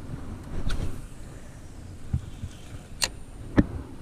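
A spinning rod and reel being cast from a boat. A brief whoosh comes near the start, then a sharp click about three seconds in and a knock just after, over a low wind rumble.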